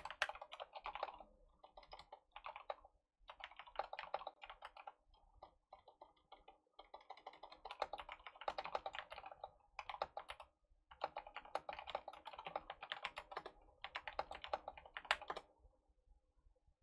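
Typing on a computer keyboard: bursts of rapid key clicks with short pauses between them.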